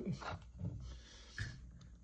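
Quiet room tone with two faint, short soft knocks, about half a second and a second and a half in, after the tail of a spoken word at the very start.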